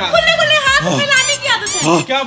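A high-pitched, child-like voice speaking.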